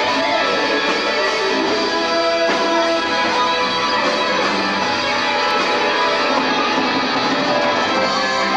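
Electric guitar played live in an instrumental stretch of a rock song, held notes changing over the band's accompaniment, with a shift about two and a half seconds in.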